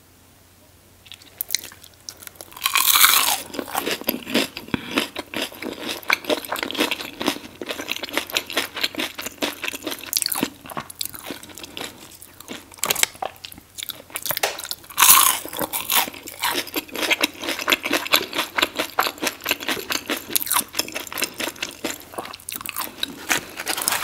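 Close-miked biting and crunchy chewing of fried tater tots in sauce. It starts about a second and a half in, with loud bites about three seconds in and again around fifteen seconds, and steady crackling chewing between.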